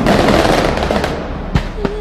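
Fireworks going off overhead: a dense, loud crackle with a couple of sharper bangs about a second and a half in.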